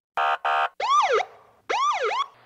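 Police siren sound effect: a click and two short buzzing blasts, then two quick wails that each rise and fall in pitch.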